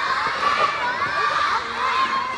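A crowd of young children shouting and cheering together, many high-pitched voices overlapping.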